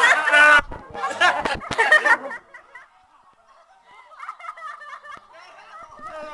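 Group of people making squawking pterodactyl-call imitations and laughing, loud for about the first two seconds, then dropping to quieter squeaks and stifled giggles.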